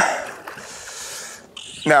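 Largemouth bass striking a topwater fly at the surface among lily pads: a sudden splash, then about a second and a half of churning water and spray that fades out.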